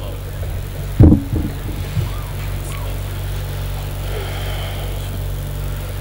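Steady low electrical hum from the microphone and loudspeaker system during a pause in the speech. A short loud sound hits the microphone about a second in, and a fainter one follows about a second later.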